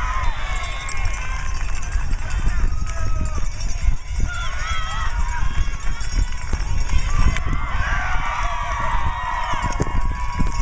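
Several voices shouting and cheering over one another as players and onlookers celebrate a goal, with the calls growing thicker near the end. A steady low rumble runs underneath.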